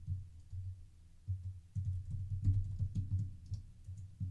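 Typing on a computer keyboard: a few keystrokes, a lull of about a second, then a quicker run of keystrokes.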